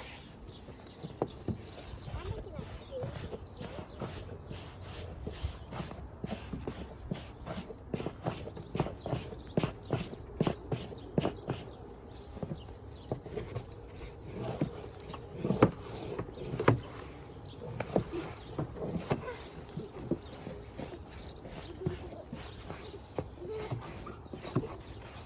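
Footsteps crunching in snow, irregular steps coming one to three a second, some louder than others.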